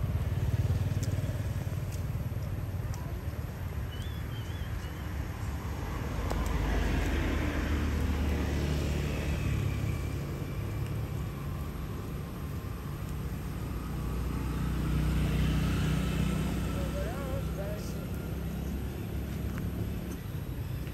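Low traffic rumble with two motor vehicles passing by, each swelling up and fading away, about seven and fifteen seconds in.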